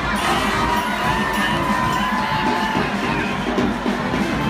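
A dense street-parade crowd cheering and shouting steadily, with parade music mixed in underneath.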